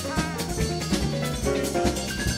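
Live jazz combo playing an instrumental passage: a piano solo of quick runs over drum kit and acoustic double bass.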